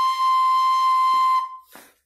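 A small whistle-type flute played at the lips, holding one long steady note that is lightly re-tongued a few times and dies away near the end.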